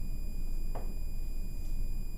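Faint strokes of a dry-erase marker writing on a whiteboard, one brief stroke standing out a little under a second in, over a steady low room hum.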